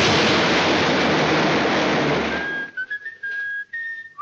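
Cartoon crash sound effect: a loud, noisy rumble as an anvil smashes into the ground. It cuts off about two and a half seconds in, and a lone whistled tune follows.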